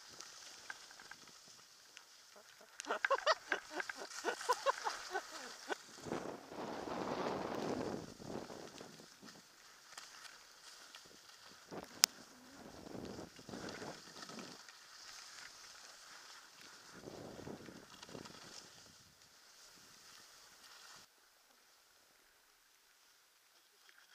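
Skis hissing and scraping over snow through a series of turns, heard from a camera carried by the skier, over a steady high hiss of wind on the microphone. A louder run of short, rapid sounds comes about three seconds in, and a single sharp click about twelve seconds in.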